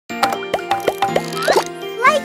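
Bright children's intro jingle: music with a string of quick bubbly pops about three a second, each with a short upward sweep, and a rising whistle-like glide near the end.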